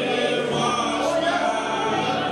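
Gospel worship song sung by several voices, with piano accompaniment.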